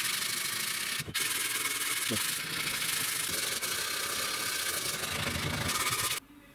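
Hand sanding of a wooden frame with a sanding sponge: a steady scratchy rubbing of abrasive on bare wood, with a brief break about a second in.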